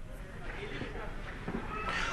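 Faint background voices and outdoor ambience during a lull between stretches of speech.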